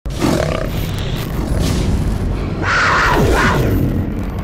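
Cinematic logo-intro sound effect: a dense low rumble with sweeping whooshes, swelling loudest about two and a half to three and a half seconds in, with a few falling tones inside the swell.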